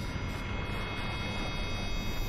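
A steady low drone with hiss and a few faint held tones, without change: ambient rumble from the animated episode's soundtrack.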